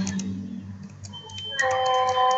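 A few light computer-keyboard clicks as a character is typed, then from about one and a half seconds in a voice holding a long, level vowel. A faint steady high tone runs under the second half.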